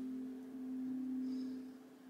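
Soft background music: a steady held low drone with a fainter tone above it, dipping near the end.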